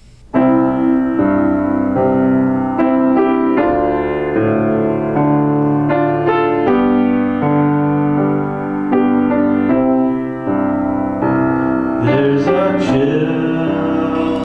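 Yamaha Disklavier Mark IV grand piano playing back a recorded piano part on its own, in ringing chords and notes. A man's voice starts singing over it near the end.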